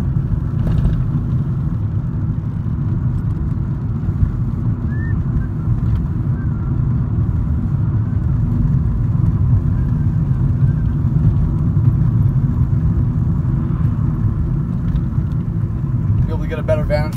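Steady low rumble of a car's engine and tyres heard from inside the cabin while driving along a road.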